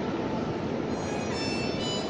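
Acoustic guitar ensemble playing a soft passage of quick, light strumming, with only faint held notes.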